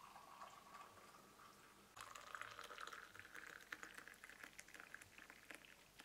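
Tea poured from a small metal teapot into glass tea glasses. A faint trickle comes first, then a louder pour starts about two seconds in, its pitch sliding slowly down.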